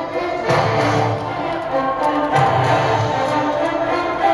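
Background music: held melodic tones over a low, pulsing accompaniment that drops in and out.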